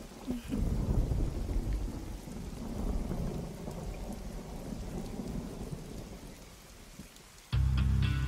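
Rain with a low rumble of thunder that slowly dies away. Background music starts suddenly near the end.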